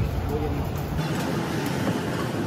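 Busy street ambience: a steady hum of traffic with background chatter from passers-by. The low rumble thins out about halfway through.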